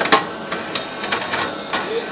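Tabletop automatic banding machine wrapping a 20 mm white paper band around a stack of cardboard: a sharp click about a tenth of a second in, the loudest, then a run of quicker clicks and snaps as the band is fed, tightened and sealed.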